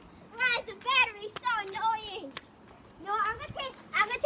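Children's high-pitched voices calling out in short, unclear phrases about half a second in, again from about one to two seconds in, and near the end.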